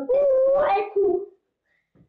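Only a boy's voice: a drawn-out, sing-song chant of "that's what I do", lasting just over a second and then stopping.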